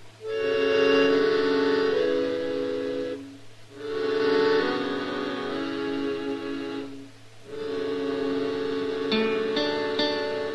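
Radio-drama bridge music: three phrases of held chords, each broken off by a short pause, then short plucked notes starting near the end.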